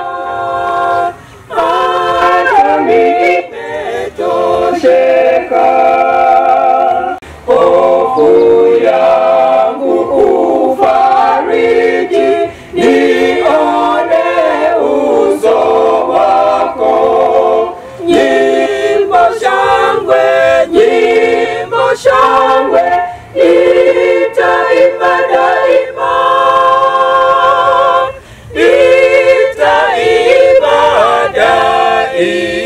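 A small group of singers, six women and one man, singing unaccompanied in harmony, in phrases with short pauses between them.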